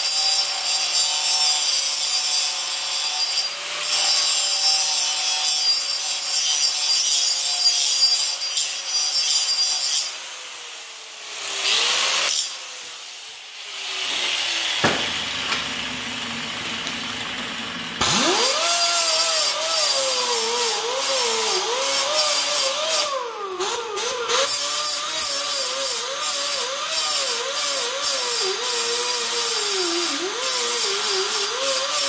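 Angle grinder with a grinding wheel grinding the end of a steel tube with a steady whine, winding down about ten seconds in. After a short quieter gap with a knock, a second angle grinder fitted with a 24-grit sanding disc starts up about eighteen seconds in. It grinds the tube edge flat, its pitch dipping and recovering as it is pressed into the metal. The grinding shapes a cope in the tube end for a roll-cage joint.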